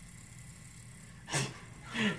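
Quiet room tone, broken about one and a half seconds in by a single short, sharp burst of breath or voice from a person, like a quick snort or laugh.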